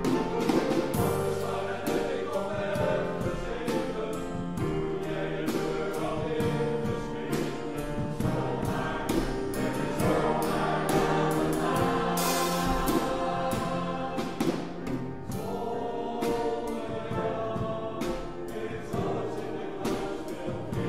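Mixed-voice close-harmony choir singing a slow song in sustained chords, accompanied by piano.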